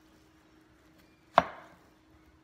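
A kitchen knife chopping through cantaloupe and striking a wooden cutting board: one sharp knock about one and a half seconds in, with a brief tail.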